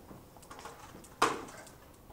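A single short knock or clatter about a second in, over faint room noise.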